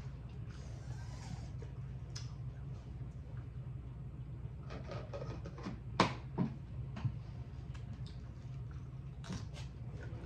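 Quiet eating at a table: scattered short crunches and clicks from hard taco shells and dishes being handled, the sharpest click about six seconds in, over a steady low hum.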